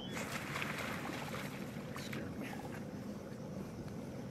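Steady, even running noise of a motorboat's engine.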